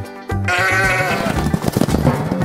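A sheep bleating: one long wavering baa that starts a moment in, over backing music with a steady bass line.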